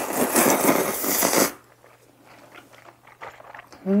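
Spicy jjamppong noodles slurped loudly into the mouth for about a second and a half, then soft chewing and mouth clicks.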